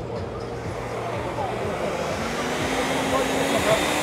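Steady indoor background noise: a low hum with faint, distant voices murmuring. A low steady tone comes in about halfway through.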